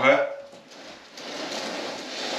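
A netted live Christmas tree being shifted on its stand away from the wall, its branches and stand giving a steady rustling scrape that starts about a second in.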